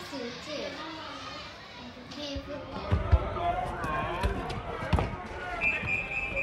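A ball thumping on hard ground several times, three quick hits about three seconds in and single ones about a second and two seconds later, with children's voices chattering around it.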